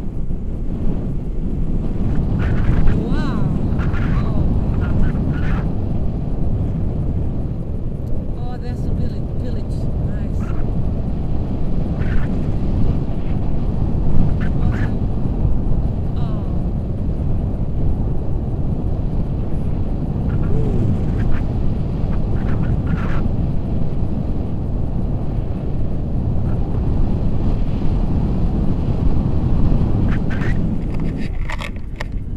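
Wind rushing over the camera microphone in flight under a tandem paraglider, a steady loud rumble, with scattered clicks and rustles from the harness and camera mount.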